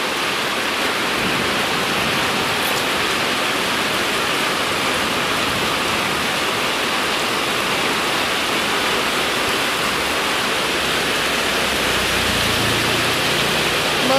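Heavy rain pouring steadily onto flooded street water, a loud, even hiss of drops on standing water. A faint low rumble joins it near the end.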